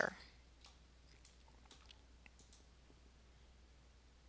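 Faint computer mouse clicks: a few soft, scattered ticks, the loudest pair about two and a half seconds in.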